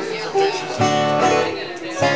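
Live country band playing: a guitar strummed in sharp chord strokes over an upright bass.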